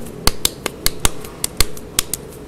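Hands patting and turning a ball of soft clay between cupped palms. A quick, even run of sharp slaps comes about five a second as the clay is rounded into a ball for a pinch pot.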